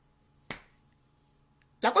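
A single sharp click about half a second in, with a brief tail, in an otherwise silent pause.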